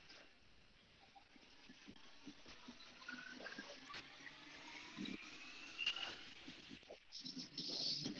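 Mostly quiet room with a few faint soft thuds of sneakers landing on the floor during alternating scissor lunges.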